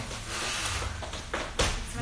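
Dancers' feet shuffling and stepping on a studio floor, with one sharp thud about one and a half seconds in, the loudest sound.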